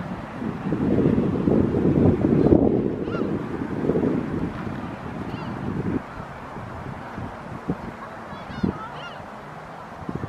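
Wind buffeting the microphone with a low rumble for the first six seconds, then easing. A few faint, short high bird calls come through, a cluster of them near the end.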